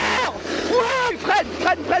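A man's voice shouting in celebration, a long cry followed by several short, quick cries.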